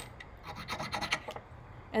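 A very hard mineral specimen scraped back and forth on a black unglazed-porcelain streak plate in a streak test: a quick series of short rasping strokes that stop about one and a half seconds in. The mineral is too hard to leave a streak.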